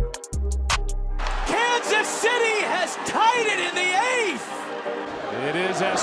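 Broadcast audio from a ballgame: a few clicks and a low hum at a splice, then music with voices over it from about a second and a half in.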